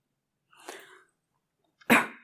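A woman's sneeze: a softer catch of breath about half a second in, then the loud, sharp sneeze near the end.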